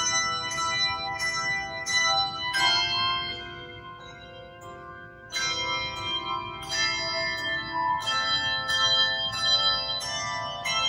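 Handbell choir ringing a piece, chords struck about twice a second. About two and a half seconds in one chord is left to ring and fade, and the struck chords pick up again a little after five seconds.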